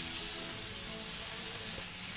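Two ribeye steaks sizzling as they sear in a hot stainless steel skillet, with soft background music of held tones.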